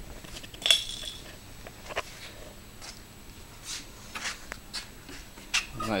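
A few light, scattered clicks and taps, the sharpest about a second in with a short metallic ring, over faint room tone.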